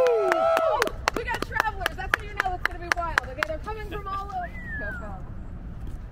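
A drawn-out shouted 'woo', then a few people clapping quickly for about three seconds with excited voices mixed in, trailing off into quieter chatter.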